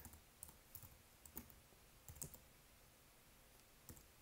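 Faint computer keyboard keystrokes as a word is typed, about half a dozen separate clicks spaced unevenly through a quiet background.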